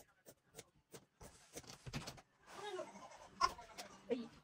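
Scissors cutting fabric: a few quick snips, about three a second, then denser snipping and fabric rustling.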